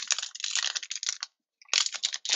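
A printed wrapper of a baseball card pack crinkling and tearing as it is pulled open by hand, a fast crackle of small clicks that stops briefly just after a second in and then starts again.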